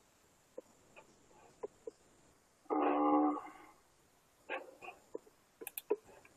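A single steady animal call about three seconds in, lasting about a second and fading, with faint scattered clicks around it.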